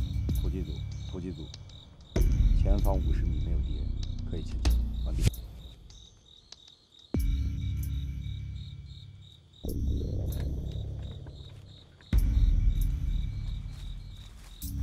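Crickets chirping in an even, rapid pulse throughout, under low, deep suspense-music swells that start suddenly and fade, four times over.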